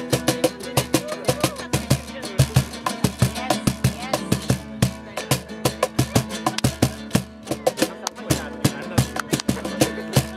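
Lively music: a fast, even rhythm of sharp strokes over a held low note.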